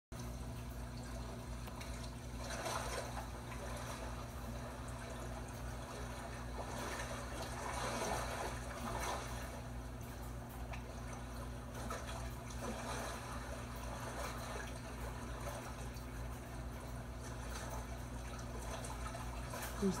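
Soft trickling water from a television playing a fish video, over a steady low hum.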